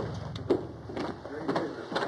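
Quiet, broken men's speech, with a light knock about half a second in.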